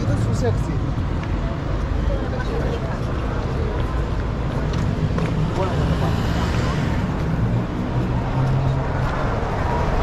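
Busy city street ambience: passers-by talking over a steady rumble of road traffic, with a car going by about six seconds in.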